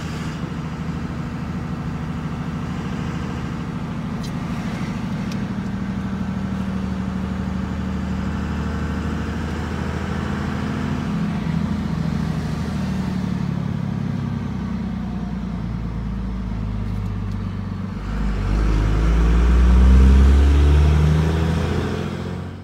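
Vehicle engine and road noise heard from inside the cab while driving, a steady hum that swells louder about three-quarters of the way through as the vehicle accelerates.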